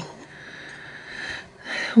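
A woman's breath between phrases: a short, audible intake of air in the second half, just before she speaks again, over a quiet room.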